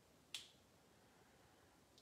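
Near silence with a single short, sharp click about a third of a second in.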